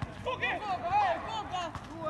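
Men's voices shouting and calling out to one another on a football pitch during play.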